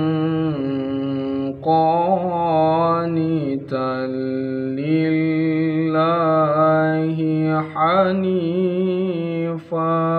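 A man's voice reciting the Qur'an in melodic tilawah style: long held notes with wavering ornamented turns, broken by a few short breath pauses.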